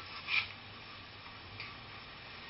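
Two short clicks over a faint steady background: a sharper one about a third of a second in and a fainter one about a second and a half in.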